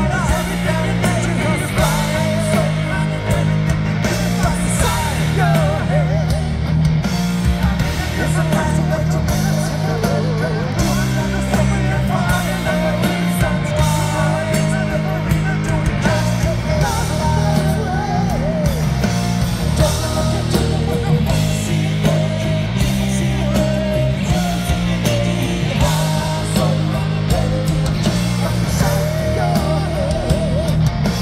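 Power metal band playing live at full volume: distorted electric guitars, bass and drums, with a male lead vocal singing over them.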